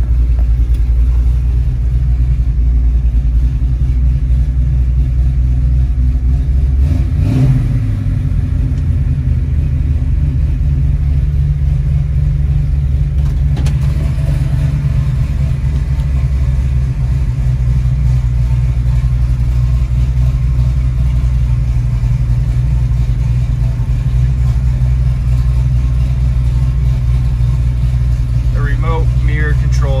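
1970 Ford Mustang Boss 302's 302-cubic-inch V8 idling steadily, heard from inside the cabin. The engine pitch briefly rises and falls about seven seconds in, and a single click sounds about thirteen seconds in.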